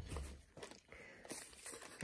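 Brown kraft-paper gift bags rustling and crinkling softly as a hand sorts through them, with a low bump at the start.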